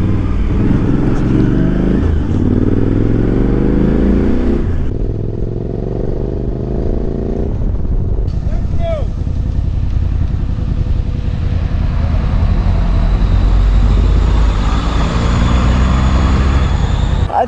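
Suzuki V-Strom motorcycle engine running on the move, with wind noise. Its pitch climbs twice in the first half as it pulls through the gears, then settles to a steadier low drone.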